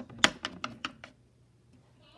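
Small plastic toy figurines handled and set down: a quick run of about six sharp clicks and taps in the first second, the first the loudest.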